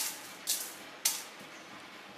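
Dry dal grains sliding off a sheet of paper and rattling onto the bottom of an empty stainless steel pan, in three short bursts about half a second apart.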